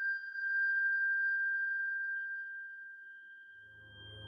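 A single steady high-pitched tone, fading slowly, with a low musical drone coming in near the end.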